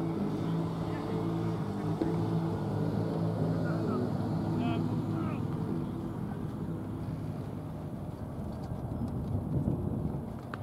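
A steady low engine drone from an unseen motor, fading somewhat in the second half, with a single short knock about two seconds in.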